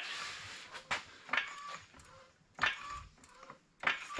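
Handling noise at the truck: a few separate knocks and clinks, some with a short metallic ring, after a soft hiss that fades within the first second.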